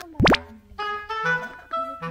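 Background music with a melody of held notes, broken about a quarter second in by a short upward-sweeping 'plop' sound effect; the melody picks up again a moment later.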